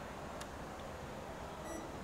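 Quiet room tone with a steady hum and hiss, one sharp click about half a second in, and a brief high electronic beep near the end.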